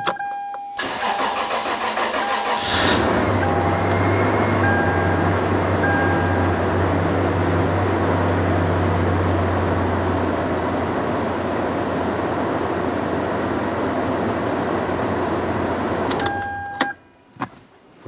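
Toyota 4Runner's 3.4-litre V6 cranking for about two seconds, catching, and running at a faster idle that settles lower about ten seconds in, then switched off near the end. It is a short run just after an oil change, to fill the new filter and circulate the fresh oil. A steady electronic beep sounds through the cranking, then beeps on and off for the first few seconds of running.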